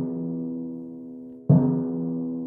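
Timpani struck with a felt mallet in a relaxed, rebounding stroke. The drum is still ringing from a stroke just before and is struck again about one and a half seconds in; each stroke is a sharp attack followed by a sustained pitched ring that slowly fades.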